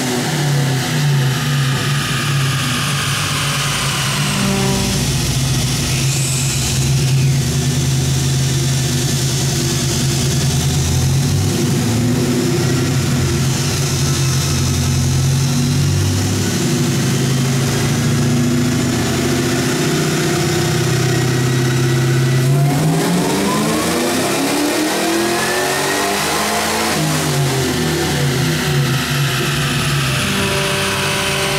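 Supercharged LY6 6.0 L V8 with an LSA roots blower, in a Chevy Colorado on a chassis dyno, running on 87-octane fuel. It holds a steady speed, then about 23 seconds in its pitch rises through a full-throttle pull and eases back down near the end.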